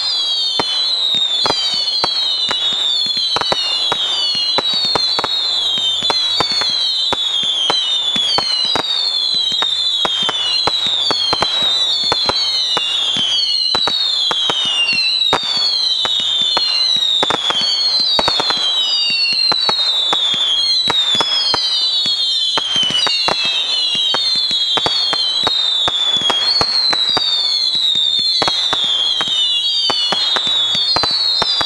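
Consumer fireworks going off in a continuous barrage: a stream of overlapping whistles, each falling in pitch, several every second, over a constant crackle of sharp pops and small bangs.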